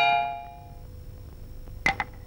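Two-tone doorbell chime ringing once, a higher note then a lower one, dying away over about a second. A brief sharp sound follows near the end.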